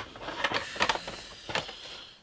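Glossy paper booklet and cardboard packaging rustling as they are handled and lifted out of a box, with a few sharp clicks and taps.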